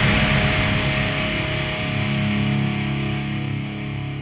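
A heavy metal band's closing chord ringing out and slowly fading: electric guitars and bass held after the final hit at the end of a song.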